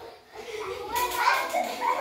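Indistinct chatter of several voices, children's among them, with no clear words.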